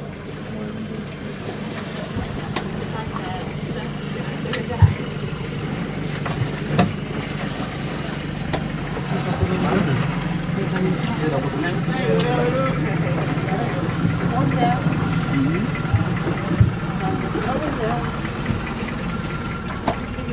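Longtail boat's engine running steadily under way, a continuous low drone, with a few sharp knocks standing out above it.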